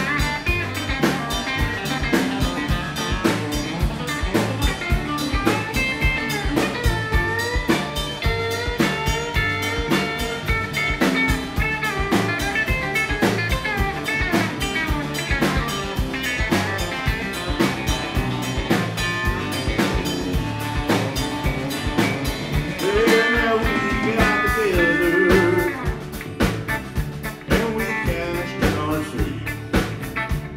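Live band playing an instrumental break: a Telecaster-style electric guitar plays a lead with bent notes over a steady drum-kit beat. The playing swells about three-quarters of the way through, then eases off.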